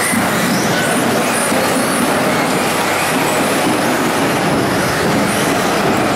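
Several 1/10-scale electric off-road RC buggies racing on a carpet track: a steady mix of motor whine and tyre noise. Short whines rise and fall as the cars accelerate and brake, echoing in a large hall.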